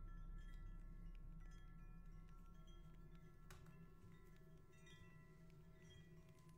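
Faint, scattered bell-like ringing tones at several pitches, each held for a second or more and overlapping, over a low hum that slowly fades.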